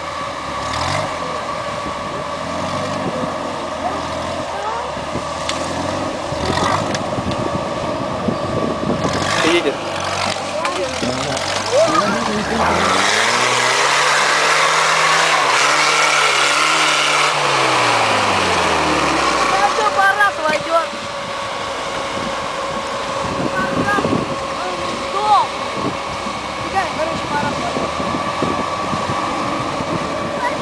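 Off-road trial vehicle's engine revving under load as it climbs a steep dirt hill. The pitch rises over several seconds from about ten seconds in, holds, and falls back near the twenty-second mark, then the engine settles to a steady lower running.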